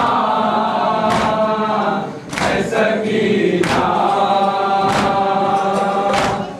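A group of voices chanting a noha (Shia mourning lament) together, with a short break between lines about two seconds in. A sharp strike keeps time about every second and a quarter.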